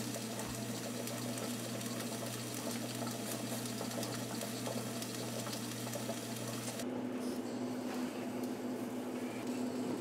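Pressure canner on the stove holding about 11½ pounds: a steady hiss and boil with a fast, fine rattle over a low hum. The hiss thins out about seven seconds in.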